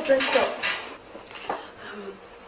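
Light clinks and knocks of hard objects, a small cluster in the first half-second or so and a single click about a second and a half in.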